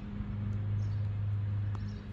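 Steady low hum of the jon boat's electric trolling motor, growing stronger about a third of a second in.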